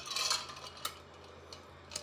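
Handling sounds of a drink tumbler being lifted to drink from: a short rustle at the start, then a single light click.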